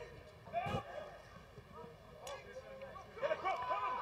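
Faint on-pitch sound of a football match: distant shouts of players calling to each other, with two sharp knocks of the ball being kicked, one about a second in and one just past the middle.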